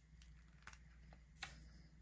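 Near silence with three faint clicks, the last the clearest, as marker pens and paper sheets are handled on a table.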